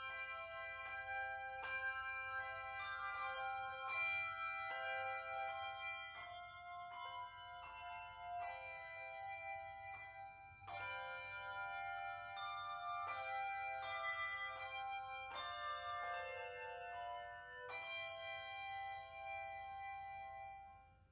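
Handbell choir ringing a slow melody in chords, each struck bell note ringing on over the next, with a brief quieter stretch about halfway through before the bells pick up again.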